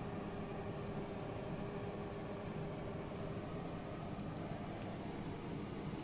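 Steady, fairly quiet hum with a faint constant whine over an even hiss, with two faint ticks a little after four seconds in.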